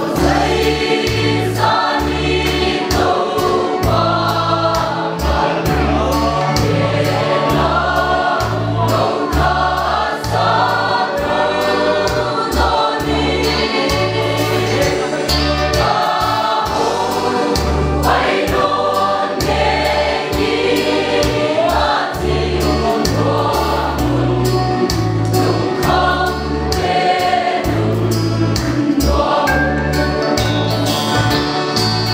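Mixed choir of women and men singing a gospel hymn together in full voice, with low notes in a steady rhythm underneath.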